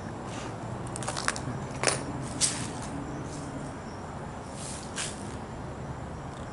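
Irregular footsteps scuffing and crunching on pavement as someone walks, about half a dozen over a few seconds, over a steady low hum.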